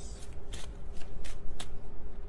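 A deck of tarot cards being shuffled by hand: a run of short, crisp, irregular card snaps.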